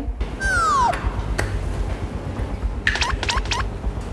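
Background music with comedy sound effects laid over it: a pitched whistle-like tone that slides downward about half a second in, then a quick run of four or five short pitched blips around three seconds in.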